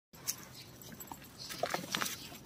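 Rhesus macaques jostling at a water dispenser, giving a few brief high squeaks, with a couple of sharp clicks of handling and scuffling.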